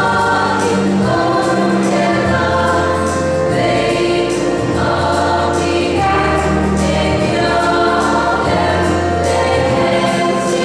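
Women's choir singing a gospel song in harmony, over held low bass notes that change every couple of seconds.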